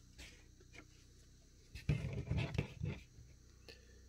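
Trading cards being handled close to the microphone: a few faint clicks, then a short burst of rustling and knocks about two seconds in.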